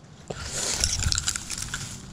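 Footsteps crunching and rustling through dry leaves, grass and brush: a run of irregular crackles that eases off in the second half.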